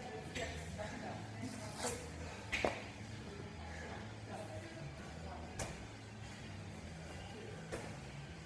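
Medicine-ball wall balls: a 20-pound ball striking the wall and being caught, about four sharp thuds at uneven intervals. Faint background music plays underneath.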